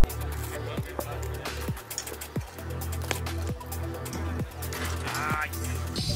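Background electronic music with a deep sustained bass and short repeated falling swoops.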